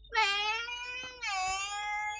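A young girl's voice crying out in distress in long, wavering, high-pitched wails: two of them, the second beginning a little after a second in.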